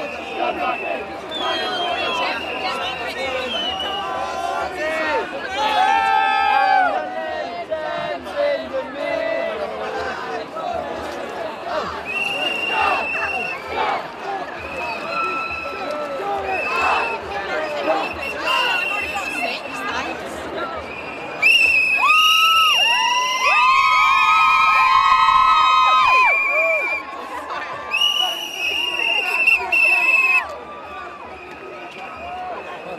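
Crowd of marching protesters, many voices talking and shouting at once, with short, high-pitched held calls cutting through; it grows louder about two-thirds of the way in.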